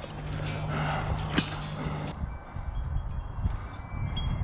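Outdoor background with a low rumble of wind on the microphone and a low steady hum through the first half. A single sharp click comes about a third of the way in, and faint thin ringing tones, like wind chimes, sound in the second half.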